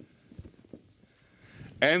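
Faint strokes of a pen writing a few short characters on a white writing surface, followed near the end by a man's voice resuming.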